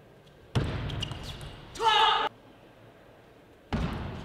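Table tennis play in a large hall. A sudden burst of ball clicks and shoe squeaks starts about half a second in and fades. A player's loud shout of about half a second follows around two seconds in, and another sudden burst of play begins near the end.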